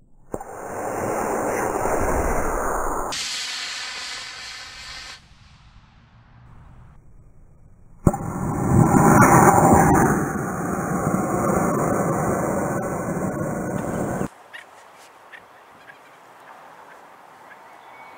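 Model rocket motor, an Estes C6-3 black-powder motor, firing at liftoff: a loud rushing hiss lasting a few seconds. After a quieter pause the launch is heard again, starting with a sharp crack about eight seconds in and followed by a louder rush of about six seconds.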